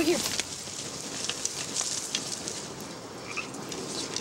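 Outdoor marsh ambience: a steady crackling rustle full of small clicks, with a bird chirping briefly a little after three seconds in.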